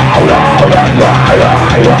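Live rock band playing loud and steady, with electric guitar and drum kit.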